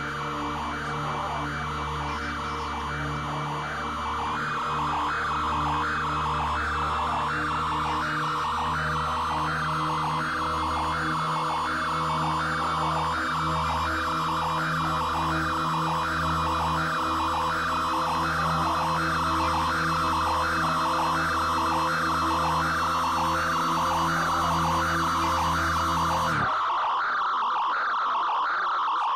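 Electronic drone music from synthesizers. Steady low tones sit under a mid-range tone that pulses about twice a second, while the high overtones slowly climb in pitch. About 26 seconds in, the low drone cuts out suddenly, leaving a thinner, higher, noisier texture.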